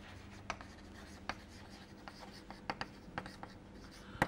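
Chalk writing on a chalkboard: faint, scattered taps and short scratches of the chalk as a word is written.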